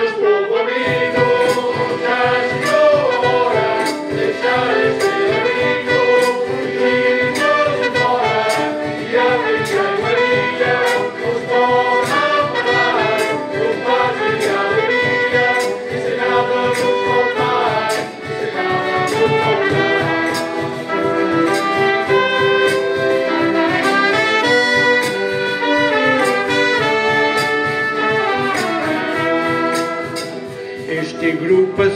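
Live band of accordion, saxophone, trumpet and acoustic guitar playing an instrumental passage of an Azorean carnival bailinho tune, a lively melody over a steady beat.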